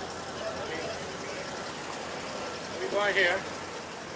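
Steady background noise with faint voices in it; a man says "yeah" about three seconds in.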